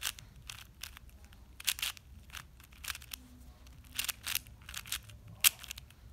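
4x4 speed cube's plastic layers clicking as they are turned through the PLL parity algorithm: about a dozen sharp turns at an uneven pace.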